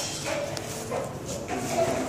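Indistinct, muffled voices in a room, with a few sharp clicks from the phone being handled.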